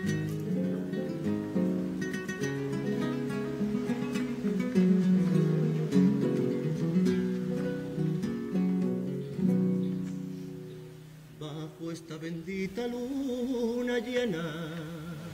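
A comparsa's Spanish guitars playing an instrumental passage of strummed and sustained chords, thinning out to sparse plucked notes near the end.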